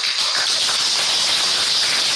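Steady, loud, high hiss of recording noise with no speech over it, the noise underlying a lecture replayed from a screen and re-recorded.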